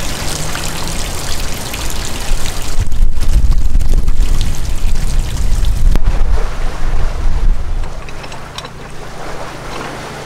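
Wind gusting on the microphone over the rush of water at a canal lock, loudest in the middle and easing near the end. Towards the end a low, steady engine hum comes in, typical of a narrowboat's diesel idling.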